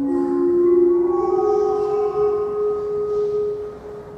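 Sung liturgical chant: a slow line of long, held notes that steps upward in pitch, then stops shortly before the end.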